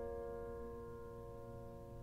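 A piano chord left to ring, its notes sustaining and slowly dying away, with no new note struck.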